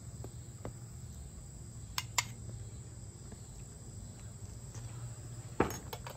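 Quiet background of a steady high insect trill over a low hum, with two light clicks about two seconds in and another near the end.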